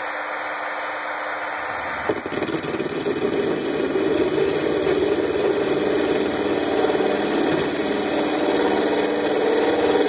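Handheld power drill spinning a 5/8-inch diamond hole saw at high speed, then from about two seconds in grinding into a glass bottle through a small pool of cooling water, the sound growing louder and rougher as the bit cuts.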